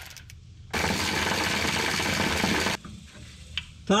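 Cordless power wrench running for about two seconds to spin out a bolt under the truck, with a rapid mechanical rattle.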